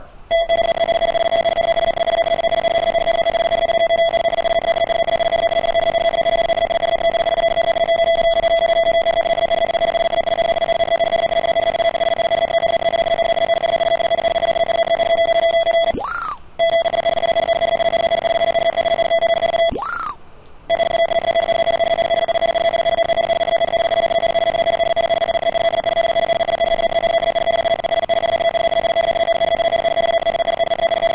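Steady electronic tone from the Master3DGage arm's measuring system, sounding while it logs points continuously as the probe traces the part. The tone drops out twice, about halfway through and again a few seconds later, each break marked by a quick swooping chirp.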